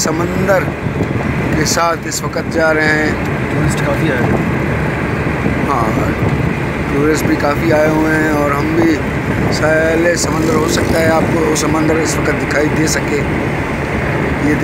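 Steady road and engine noise heard from inside a moving car with its window open, with a person's voice talking at times over it.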